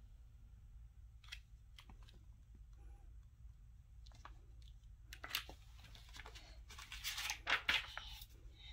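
Paper pages of a hardcover picture book being turned and handled: faint ticks at first, then a few short, soft papery rustles in the last three seconds.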